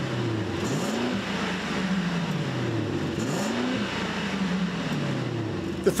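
Mercedes-Benz GLS 580's 4-litre twin-turbo V8 revved at standstill, heard at the tailpipe: two throttle blips, about a second in and about three seconds in, each rising quickly and sinking slowly back toward idle. The engine note is muted, like rolling thunder in the distance.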